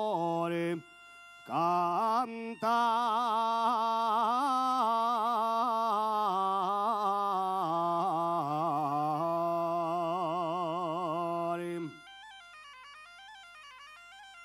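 Asturian tonada sung by a male voice in long, heavily ornamented phrases with a wavering pitch, accompanied by a gaita asturiana (Asturian bagpipe). There is a brief break about a second in. About twelve seconds in the voice stops, and the bagpipe carries on alone, quieter, with quick ornamented notes.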